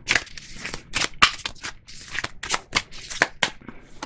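A deck of oracle cards being shuffled by hand: a quick, uneven run of card snaps, several a second.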